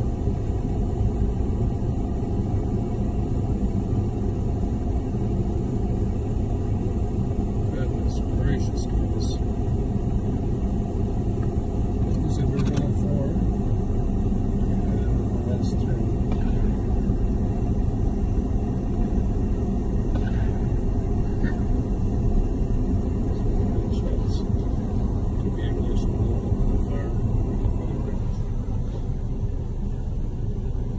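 Car engine idling in park, heard from inside the cabin as a steady low rumble with a constant hum. Faint voices come and go over it.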